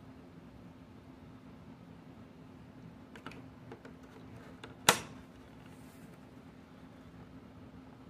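A few light plastic taps, then one sharp plastic click about five seconds in as a miniature toy item is pressed into its slot in a hard plastic display case, over a steady low room hum.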